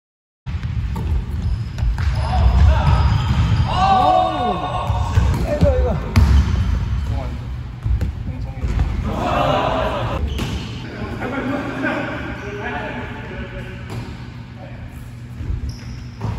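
Basketball being dribbled on a hardwood gym court, repeated thuds that are heaviest in the first half, with players' voices calling out over it.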